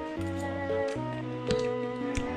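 Background music: a soft instrumental track of sustained notes over a bass line, changing every half second or so. A single short click sounds about one and a half seconds in.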